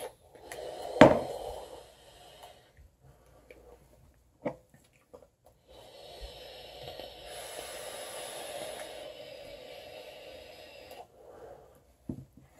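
Vapes being drawn on, one of them a rebuildable dripping atomizer: a short draw with a sharp click about a second in, then a long steady hiss of airflow lasting about five seconds.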